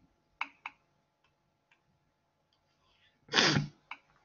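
A person sneezing once, a short loud burst near the end, after two light clicks about half a second in.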